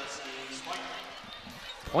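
Faint indoor arena background between calls: distant voices in a large hall, with a few soft low thuds, such as a volleyball bouncing on the court. A commentator's voice begins at the very end.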